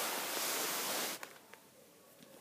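Rustling hiss of the phone's microphone being rubbed as the camera is moved, lasting about a second and cutting off suddenly.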